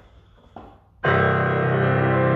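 Yamaha P125 digital piano playing its CF3S concert grand piano voice: a chord is struck about a second in and rings on, bass and treble together.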